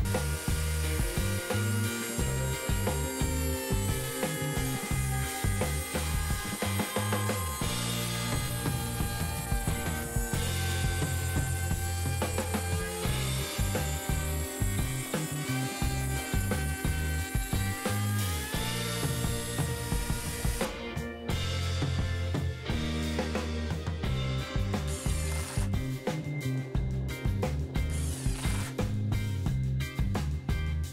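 Router in a router table running at high speed, its whine sagging in pitch each time the slot-cutting bit cuts the 9 mm groove into a pine piece and recovering between passes, with background music underneath. The whine stops about two-thirds of the way through, followed by a run of sharp clicks.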